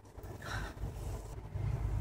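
Wooden spatula stirring shredded Brussels sprouts in a cast iron skillet, a soft scraping and rustling, over a low steady hum.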